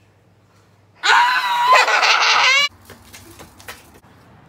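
A girl's loud, high-pitched shriek, starting about a second in and held for nearly two seconds, followed by a few faint knocks.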